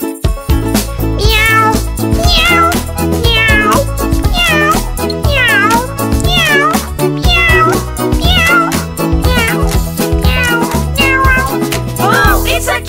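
A cat meowing over a bouncy children's-song backing track: a run of short rising-and-falling meows, about one every 0.7 s, starting about a second in.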